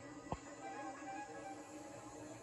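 Soft background music score playing from a television, with held steady notes; a single short thump about a third of a second in.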